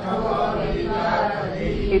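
A group of voices chanting a line of Sanskrit together in unison, repeating a phrase of scriptural text just recited by a single voice. The blended voices sound blurred against one another.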